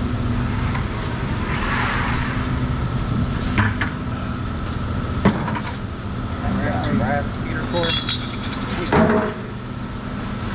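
A few sharp metal clanks as scrap parts are handled, the loudest near the end, over a steady low engine-like hum. Faint voices come and go.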